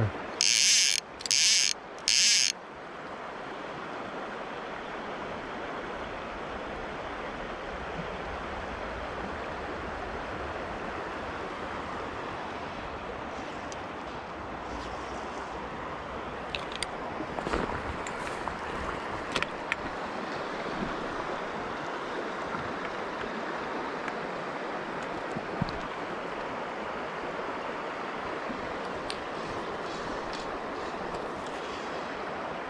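Steady rush of river water running over a shallow run. Near the start, three short buzzing bursts of a fly reel's click ratchet as line is pulled off, then a few faint ticks.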